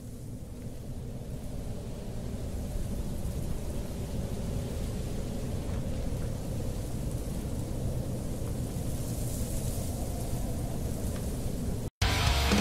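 Ambient noise intro of a deathcore backing track: a dense low rumble with hiss above it and a faint steady drone beneath, slowly swelling louder, then cutting off abruptly at the very end.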